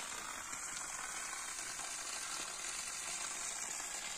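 Steady hiss of a water jet spraying from a hose fed by a solar-powered well pump.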